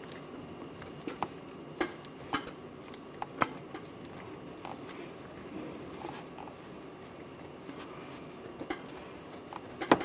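Scattered sharp clicks and rubbing as a spin-on oil filter is turned by hand through its final half turn of tightening, most of them in the first few seconds and two more near the end.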